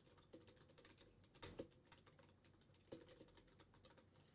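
Faint computer-keyboard typing: a few scattered, quiet keystroke clicks over near silence.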